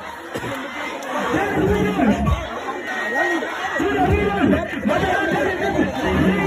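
Voices talking and chattering close to the phone, over a crowd's background noise, with no music.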